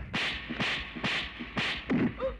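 Film sound effects: a quick run of sharp, whip-like swishes and whacks, about five in two seconds.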